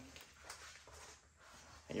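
Faint handling noise of a body-armor vest's elastic side strap being pulled round and fastened, with one soft tick about half a second in.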